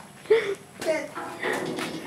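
Quiet voices in brief, broken snatches of talk, with a single short knock a little under a second in.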